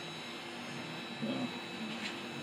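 Steady room tone: an even hum and hiss with a thin, steady high whine. A brief, soft voiced murmur comes about halfway through.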